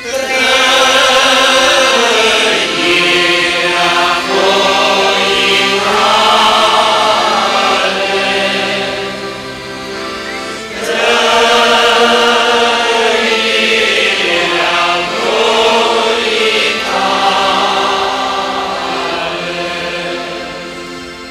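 A large congregation of men's and women's voices singing a hymn together, in two long phrases with a short breath between them about halfway through.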